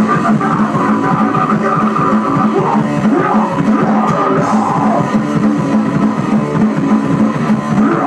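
Punk band playing live and loud: electric guitar, bass guitar and drum kit, with a singer shouting into the microphone.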